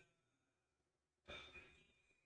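Near silence, then a little over a second in a single short exhale, like a sigh, close to the microphone.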